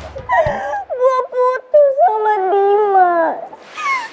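A young woman crying aloud in high-pitched wails: several short cries, then one drawn out for over a second that falls in pitch and breaks off near the end.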